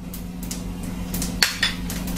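Cumin seeds sizzling in hot oil in an aluminium kadai: a steady sizzle with sharp crackles, bunched about a second and a half in, as the seeds begin to splutter.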